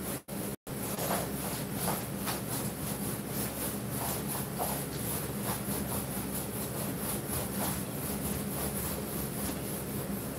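Steady low mechanical hum with hiss, with faint soft strokes repeating about twice a second.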